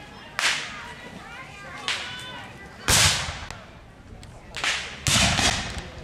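Black-powder muskets firing: five separate reports with short echoing tails, the loudest about three seconds in, the last a ragged volley lasting most of a second.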